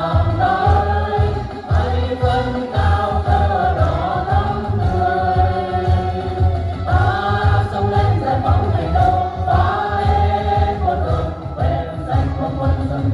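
A Vietnamese song sung together by a group of women and a man into microphones, with long held notes, over an amplified backing track with a steady bass beat.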